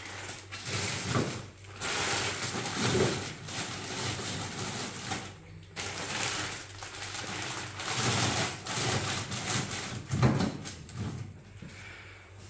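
Plastic packaging of frozen food rustling and crinkling as bags are pushed and shuffled onto freezer shelves, rising and falling unevenly with a couple of short pauses.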